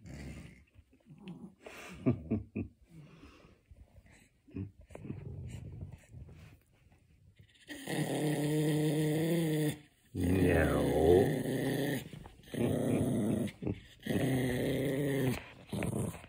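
Pomeranian growling over his pink treat-dispensing turtle toy: after several quieter seconds of small knocks, a run of four long growls, each one to two seconds, starts about halfway through as a hand strokes him. It is a warning growl, guarding the toy against being taken away.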